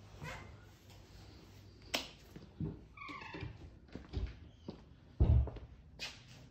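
A door being opened and let swing shut: a sharp click, a short falling squeal a little after three seconds, and a heavy thud a little after five seconds, the loudest sound.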